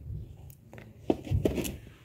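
Plastic kitchen holder in a paper label sleeve being handled: light rustling with a few soft clicks and a dull knock about a second and a half in.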